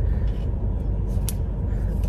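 Steady low rumble inside a car cabin, with a few faint clicks from handling a small plastic tripod piece.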